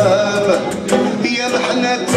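Live Algerian traditional ensemble music: plucked oud, mandole and banjo with a bowed violin and frame-drum beats, and a male voice singing over them.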